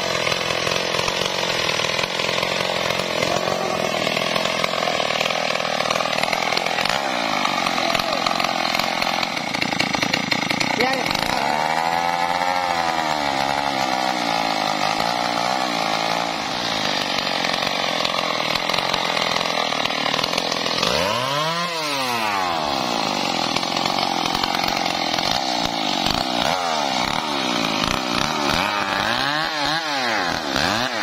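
Stihl MS 381 two-stroke chainsaw running steadily without cutting, its engine pitch climbing and dropping as it is revved around twelve seconds in and again, sharply, around twenty-two seconds in.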